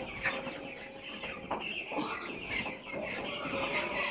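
A flock of young broiler chicks peeping and chattering steadily, many small high calls overlapping, with a few light knocks.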